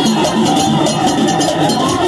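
Live Haitian Vodou ceremonial music: voices singing, one of them through a microphone, over fast, steady percussion.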